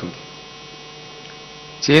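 Steady electrical mains hum in the microphone and sound-system feed, a set of fixed tones held level through a pause in a man's speech. His voice returns near the end.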